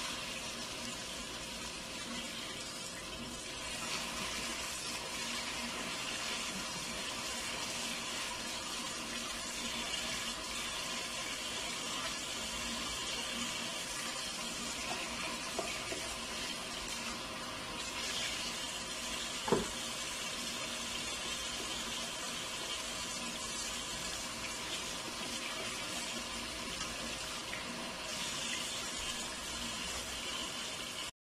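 Water running steadily from a kitchen tap into a sink, with a single sharp knock about two-thirds of the way through.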